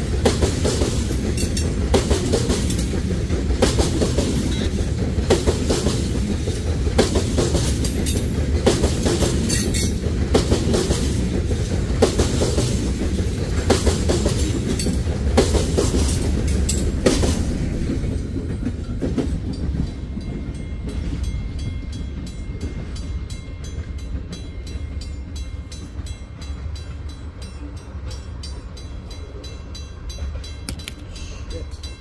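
Iowa Interstate freight train of covered hopper cars rolling past at close range, its wheels clicking steadily over the rail joints over a heavy rumble. The clicking stops as the last car clears about two-thirds of the way through, and the rumble fades away.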